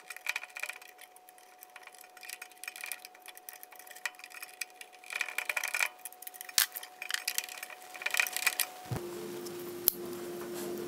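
Small clicks, taps and metallic rattles of wire ends and a screwdriver being worked into a variable frequency drive's screw terminal block, in bursts, with a sharper click about six and a half seconds in. A faint steady whine sits underneath and changes to a lower hum at about nine seconds.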